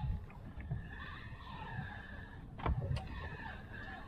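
Spinning reel cranked steadily, its gears whirring with a faint wavering tone, as a hooked fish is wound up against the line through deep water. Low wind and water noise underneath, with a couple of sharp clicks a little before three seconds in.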